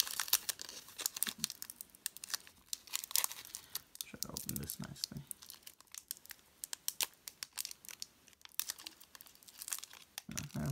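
Foil wrapper of a Pokémon TCG booster pack crinkling and tearing as it is ripped open by hand, in a quick run of sharp crackles. The crackles are thickest in the first second and around three seconds in, then come more sparsely.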